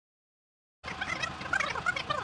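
Fast-forward sound effect starting abruptly about a second in: a dense run of rapid, high chattering blips, like audio played at high speed.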